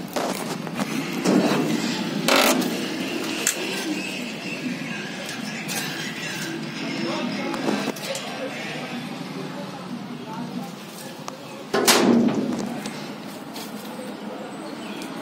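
Indistinct background voices over general ambient noise, with a few sharp knocks; the loudest knock comes near the end.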